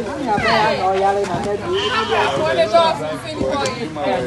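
Several people talking and calling out at once, voices overlapping.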